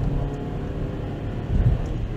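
Mazda 3 1.6 MZR four-cylinder engine pulling under acceleration, heard inside the cabin over steady tyre and road rumble on a wet road. A brief low thud comes near the end.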